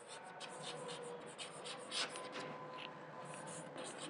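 Chalk writing on a chalkboard: a quick run of faint, irregular scratches and taps as the strokes of a word are written.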